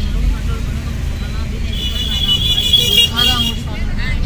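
Steady low rumble of the car's engine and road noise, heard from inside the cabin while driving slowly. A high, steady tone sounds for about a second and a half past the middle, and a brief voice is heard near the end.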